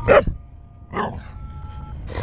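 A dog barking twice: two short barks about a second apart, the first louder.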